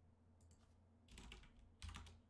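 Faint computer keyboard keystrokes: Backspace pressed twice, then Return, with a sharper click near the end.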